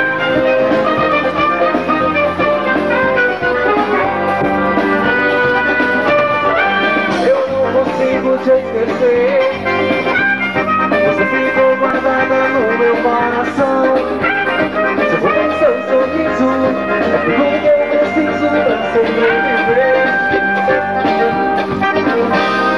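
A live band playing continuous up-tempo music with drums and horn lines, including a saxophone, and a singer's voice over it.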